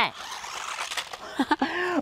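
Small electric motors and spinning wheels of a toy remote-controlled stunt car, a steady whir that stops about a second and a half in.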